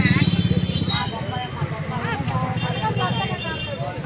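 A vehicle engine running close by with a low, rapidly pulsing thrum that fades away after about a second, under the voices of a crowd talking.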